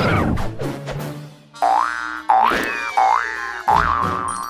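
Cartoon sound effects. A quick falling slide at the start, then, from about one and a half seconds in, four identical springy boings, each a rising twang about two thirds of a second apart, over the cartoon's music.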